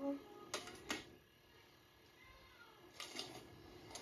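Handling noise: two short sharp clicks about half a second apart early on, then a brief rustle about three seconds in.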